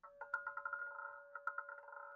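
Roulette ball circling an automated roulette wheel: a steady ringing hum with quick, irregular rattling ticks as the ball runs around the track before it drops.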